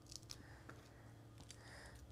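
Faint handling sounds of a small paper-backed sheet of foam adhesive squares: a few soft clicks and a light rustle near the end.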